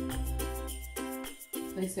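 Background music: plucked strings over bass notes with a steady beat. A voice comes in right at the end.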